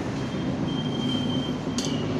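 Steady low mechanical rumble with a thin, steady high-pitched whine through most of it, and a brief clatter near the end.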